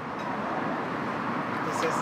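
Steady hum of road traffic passing along the street, with a man's voice starting again near the end.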